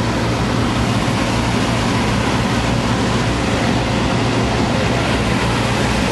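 Steady drone of idling vehicle engines, a constant low hum under an even rushing noise.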